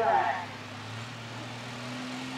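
A modified super stock pulling tractor's engine idling at the start line, a steady low hum that rises slightly in pitch about a second in.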